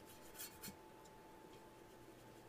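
Near silence, with a couple of faint soft scrapes about half a second in from a paintbrush dragging thick black underglaze over a textured ceramic plate.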